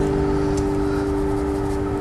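Last acoustic guitar chord left ringing and slowly dying away, over a low steady rumble.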